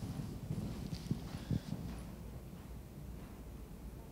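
A horse's hoofbeats on sand arena footing: a run of dull thuds with a couple of sharper knocks in the first two seconds, growing quieter after that.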